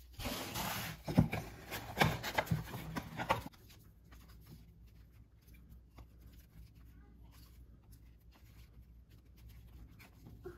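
Trading cards rubbing and sliding against each other as a stack is handled, with a few sharper flicks. About three and a half seconds in it drops to quiet handling with only faint ticks.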